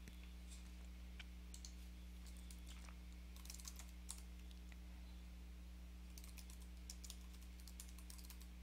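Faint typing on a computer keyboard: scattered keystrokes with quicker runs in the middle and near the end, over a steady low hum.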